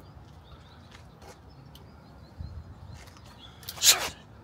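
Faint bird chirps over a quiet outdoor background, with one short, loud rushing hiss near the end.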